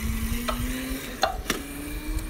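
Handling noise from a hand-held phone's microphone: crackling rubbing with a few sharp clicks, over a faint steady hum.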